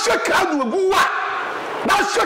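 A man speaking animatedly, his voice rising and falling in pitch.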